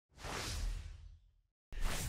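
A whoosh sound effect that swells in quickly and fades out about a second in.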